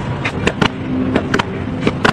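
About seven sharp clicks and knocks at irregular intervals over a steady outdoor background noise.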